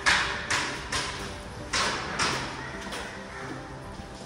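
Footsteps on a bare concrete floor, about five hard steps at an uneven walking pace, each echoing in empty, unfinished rooms. Faint music runs underneath.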